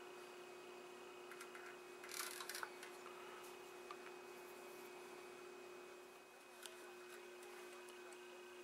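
Near silence with a faint steady hum, broken about two seconds in by a brief soft rustle and clicks of a metal chassis being handled and set down on carpet.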